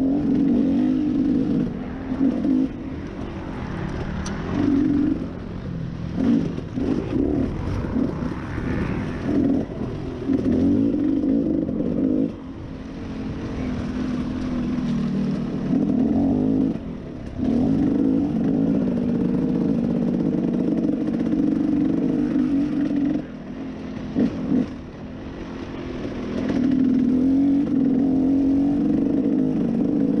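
Dirt bike engine under way on a rough trail, revving up and easing off with the throttle, briefly backing off several times, with the bike rattling over the ground.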